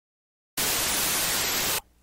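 A burst of steady static hiss, a little over a second long, cutting in and out abruptly between stretches of dead silence.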